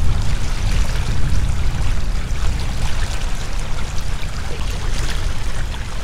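Water rushing and splashing along the hull of a sailing yacht under way, under a loud, uneven rumble of wind on the microphone.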